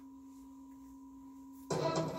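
A faint steady hum of two pure tones, one low and one higher, held unchanged; near the end guitar music starts suddenly.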